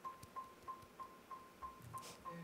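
Faint electronic metronome click: a short, high, even beep repeating about three times a second, setting the tempo just before the band starts the song.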